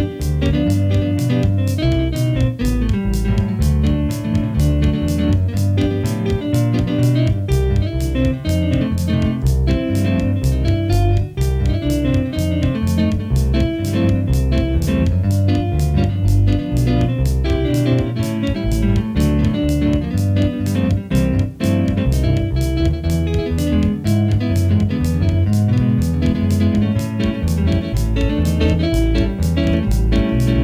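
Synthesizer keyboard played with a guitar voice: a plucked, electric-guitar-like melody over a steady beat and bass line.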